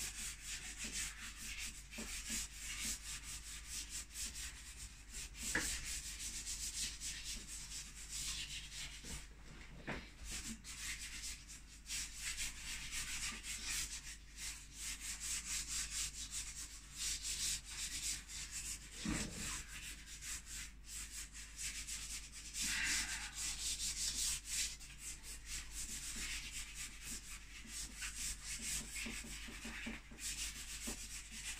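A pastel and charcoal stick scratching and rubbing across a stretched canvas in quick, repeated strokes.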